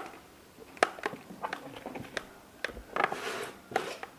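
Close handling noises: an irregular string of sharp clicks and knocks, with a brief rustling or splashing burst about three seconds in.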